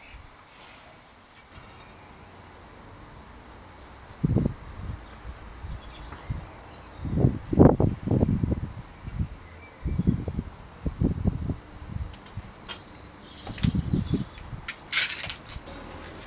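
Workshop handling noise: irregular clusters of soft, low knocks and bumps as hands work tweezers and loose ball bearings into the freshly greased bearing cup of a Campagnolo Athena rear hub.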